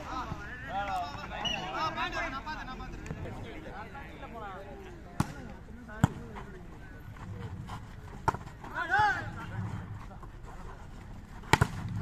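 A volleyball being struck by hand during a rally: a few sharp slaps, spaced out, with a quick pair near the end. Shouts from players and onlookers come in between.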